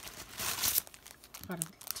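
Plastic packaging crinkling as it is handled, loudest in a brief rustle about half a second in, with a few lighter crackles after.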